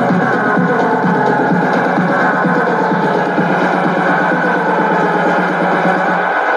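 Techno house DJ mix playing loud over the club sound system, with a steady electronic beat and synth layers.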